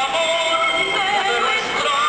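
Soundtrack of an old black-and-white Mexican film: a man and a woman singing a duet in turn, with musical accompaniment.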